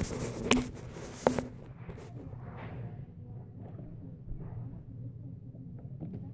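Phone being carried and handled as it is set down on the carpet: a couple of short knocks in the first second and a half, then faint rustling and shuffling.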